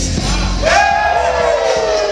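Loud music with a heavy bass beat. About a third of the way in, a long vocal sound starts and slowly falls in pitch.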